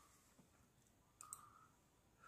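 Near silence, with one faint click a little over a second in.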